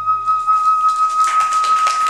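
A kagura bamboo transverse flute holding one long, steady final note as the Iwami kagura piece ends. Audience applause starts up about a second in.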